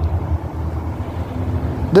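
Low, steady rumble of a motor vehicle's engine, with a faint hum over it.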